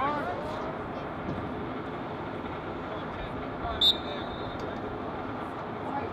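Open-air lacrosse field ambience: a steady wash of background noise with faint distant voices. Near the four-second mark comes one short, sharp, high-pitched referee's whistle blast.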